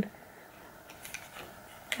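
A few faint, short ticks from fingers handling the stiff cardboard flaps of a lift-the-flap board book, over quiet room tone.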